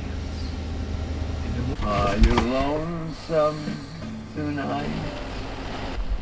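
A man's voice speaking over a steady low hum; the hum is clear for the first second or two and returns near the end.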